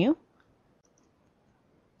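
A faint computer mouse click about half a second in, as a menu is opened, followed by near silence.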